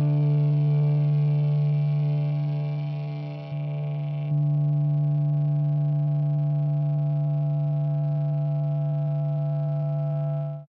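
A single held note on a distorted electric guitar, ringing out steadily as a rock song ends. It briefly drops in level about three and a half seconds in, then comes back.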